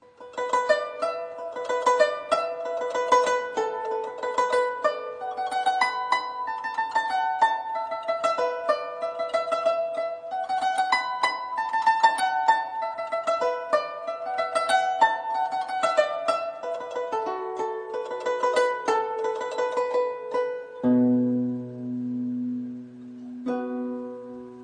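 Guzheng playing a fast passage of plucked notes that uses 轮指 (lunzhi) tremolo fingering, with the left hand bringing out the bass. Near the end the run stops and a few low notes are left ringing.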